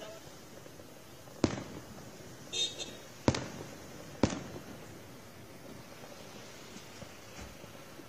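Fireworks bursting: three sharp bangs, the first about a second and a half in, then two more roughly two seconds and one second after it.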